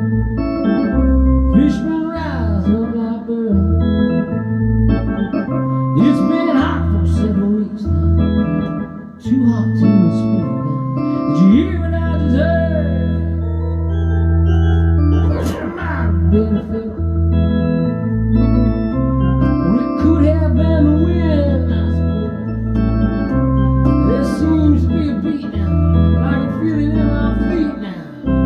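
Electronic organ played in ballpark-organ style: sustained chords over a bass line that steps from note to note, with tones sliding up and down in pitch above them.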